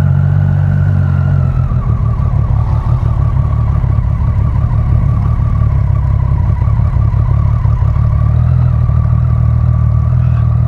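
Motorcycle engine running at low speed beneath the rider. Its revs ease down over the first second or two, then hold steady.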